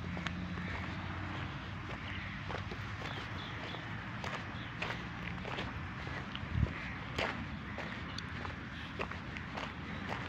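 Footsteps on a dirt path, a light click every half second or so, over a steady low hum. A single heavier thump comes about two-thirds of the way through.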